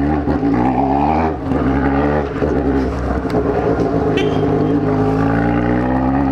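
Yamaha XJ6's inline-four motorcycle engine running as the bike rides slowly through city streets, heard from the rider's helmet. The note is steady, wavers briefly about a second and a half in, then settles again.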